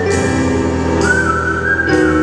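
A slow whistled melody over sustained piano chords: one long held note, then a slightly lower note starting about a second in.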